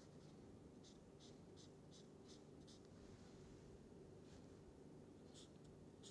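Faint strokes of a felt-tip permanent marker on paper: a quick run of about six short strokes in the first three seconds, then two more.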